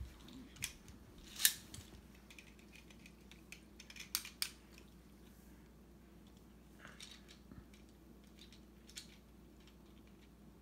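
Plastic Beyblade parts and a Beyblade launcher being handled and snapped together: a few sharp clicks, the loudest about one and a half seconds in, with a cluster near the middle and fainter ones later.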